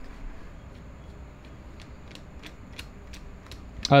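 Faint, irregular light metallic clicks, about eight of them in the second half, as a hand screwdriver works a fastener loose on a small motorcycle engine.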